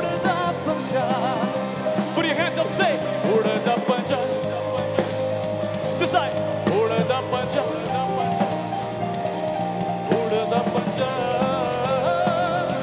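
Live rock band playing through a PA: electric guitars, bass and drums with a singer's voice over held, sustained notes.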